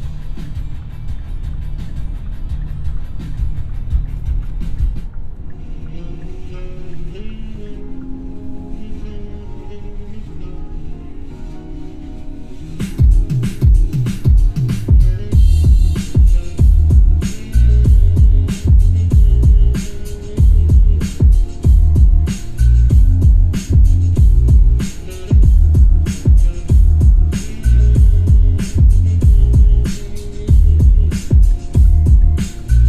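Bass-heavy electronic music playing through the 2021 Hyundai Santa Fe's 12-speaker Harman Kardon sound system with the bass turned all the way up, heard inside the moving car's cabin. A quieter melodic passage gives way about halfway through to loud, steady, heavy bass beats.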